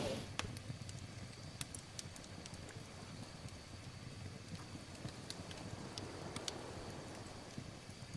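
Small wood campfire crackling quietly, with scattered sharp pops at irregular moments over a faint hiss.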